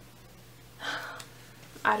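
A short audible breath from a woman about a second in, after a quiet pause, with the first word of her speech just before the end.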